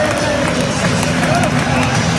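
Football crowd in a stadium: a steady din of many voices, with a few single shouts rising above it.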